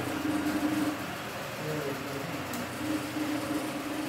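A pause in the talk: a steady low hum and hiss of room background noise, with a few faint tones that drift in and out.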